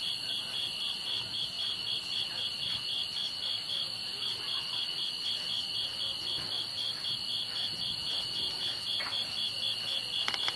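Night insect chorus, crickets or katydids calling: a steady high chirring that pulses about five times a second over a continuous high whine.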